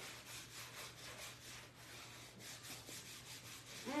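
Faint back-and-forth rubbing of a textured sponge applicator working leather conditioner into a leather recliner, in repeated strokes.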